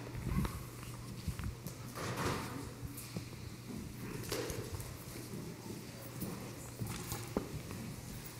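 Footsteps and shuffling as several people walk across a carpeted stage, with a few light knocks, over a steady low hum.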